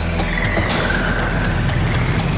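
Electronic theme music of a TV programme's title sequence, with a low, rapid rattling pulse and a tone that slides down partway through.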